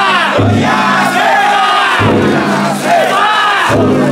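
Many men in a crowd shouting a festival chant together. The big taiko drum in the yatai drum float is struck slowly underneath, about once every second and a half.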